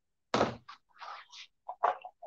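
Knocks and rustling from hands working at a sewing machine while the fabric is set in place. A sharp thunk comes about a third of a second in, then a few light clicks and rustles, and another sharp knock near the end.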